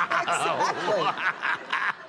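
People laughing hard, a man's open-mouthed laughter in quick pulses.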